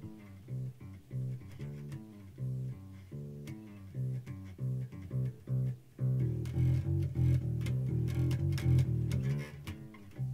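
Ibanez Musician four-string electric bass played with the fingers: a repeating line of plucked notes. About six seconds in the playing gets louder and busier, then eases back just before the end.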